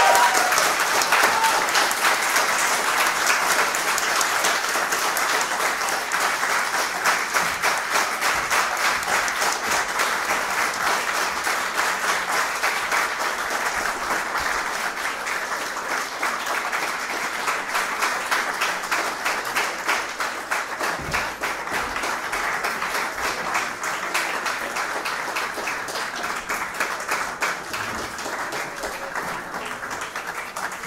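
Audience applauding, dense clapping that starts loud and slowly tapers off.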